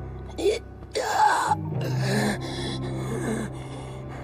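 An injured man gasping and groaning in pain, in a few short strained bursts, over background music.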